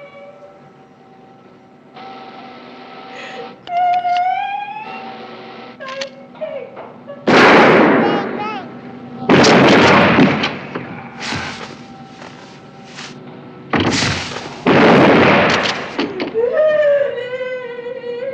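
Gunfire in a stairwell: five loud blasts starting about seven seconds in, each ringing on for about a second. Near the end a man cries out in pain.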